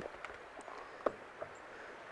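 Handling of a plastic solar hub and its panel cable connector: a few light clicks and one sharper click about a second in as the cable is plugged in and the hub is set down on a wooden table, over a faint outdoor background.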